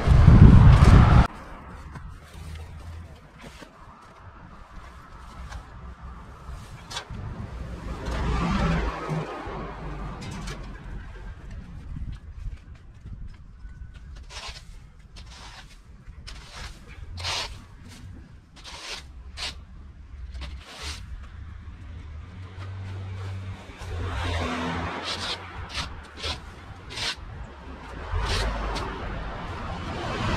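Yard clean-up handling: a loud burst of noise in the first second, then scattered sharp scrapes and knocks as a long-handled garden tool works through green waste on the ground, over a steady low rumble.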